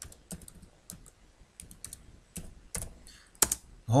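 Typing on a computer keyboard: a run of irregularly spaced keystrokes as a word is typed, with one louder keystroke near the end.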